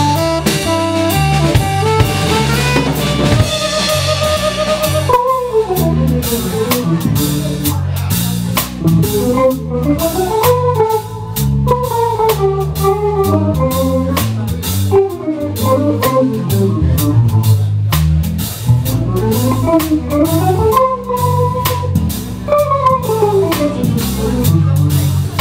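Small jazz combo playing: a saxophone line ends about five seconds in, then an archtop electric guitar solos in runs that climb and fall, over electric bass and drum kit.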